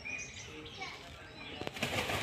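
Indian peafowl (peacock) beating its wings as it takes off: a loud burst of wing flaps begins near the end. Small birds chirp briefly before it.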